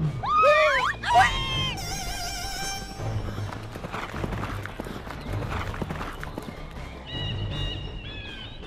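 Cartoon sound effect of a horse whinnying twice in quick succession, with a held tail, followed by a stretch of irregular hoofbeats as horses set off. Background music plays throughout.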